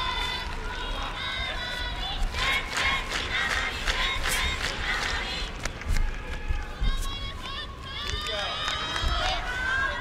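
Crowd noise in a large arena with many high-pitched shouts and calls of encouragement and scattered sharp knocks, the shouting strongest in the first half and again near the end.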